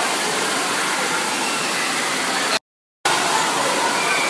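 Steady rushing of falling water from water-park fountains, such as a mushroom-shaped umbrella fountain pouring onto a splash pad. The sound drops out completely for about half a second, roughly two and a half seconds in, then resumes unchanged.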